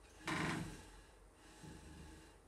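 A brief handling noise, about half a second long, as a hand adjusts a small projector right by the microphone.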